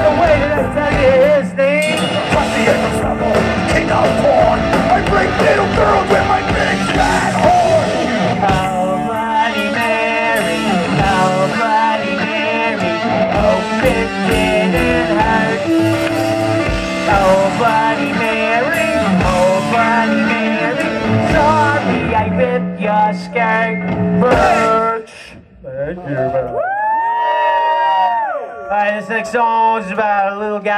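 Live punk rock band playing loudly with electric guitar, bass and drums, with occasional shouts. The song ends about 25 seconds in, followed by a few sparse, held, wavering notes.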